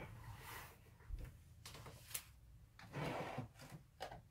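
Faint rustling handling noises with a light click just past the middle and a louder rustle near the end.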